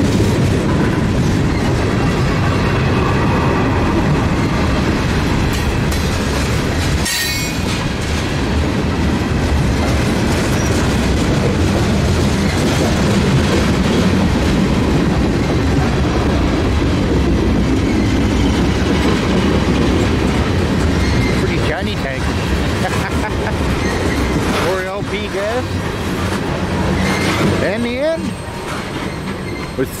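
Freight cars of a mixed freight train rolling past at close range: a steady loud rumble of steel wheels on rail with the rattle of noisy gondolas. A few sharp clanks ring out, the clearest about a quarter of the way in.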